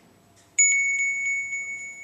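Smartphone alarm tone played through the phone's speaker: a bell-like ring with several quick strikes, starting suddenly about half a second in and slowly fading. It is the cue for a student to stop and check his on-task behaviour.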